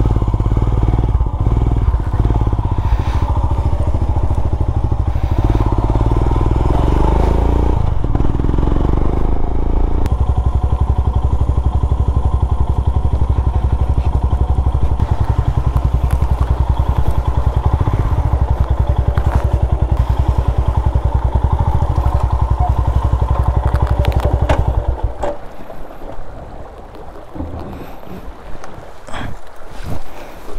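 Royal Enfield Himalayan's single-cylinder engine running under way, a steady, fast-pulsing exhaust note. About 25 seconds in the engine sound falls away and only quieter, uneven noise remains.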